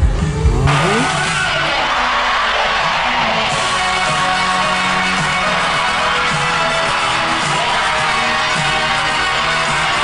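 Live concert recording: band music under a dense, steady wash of crowd noise, which starts abruptly less than a second in at a cut between clips.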